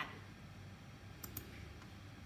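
Computer mouse clicked twice in quick succession about a second into the pause, switching the result display on screen, over a faint steady low room hum.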